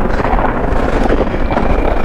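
Steady rushing, rubbing noise from a body-worn wireless microphone on a hockey goalie, moving against his gear, with a few faint knocks.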